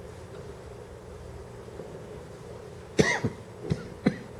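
A person coughing twice in quick succession, about three seconds in, over low steady room noise.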